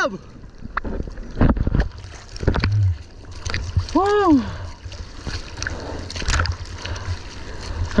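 Seawater splashing and sloshing against a surfboard and a waterline action camera as a surfer paddles, with irregular splashes and a low rumble of water on the microphone. A single short shouted call rises and falls about four seconds in.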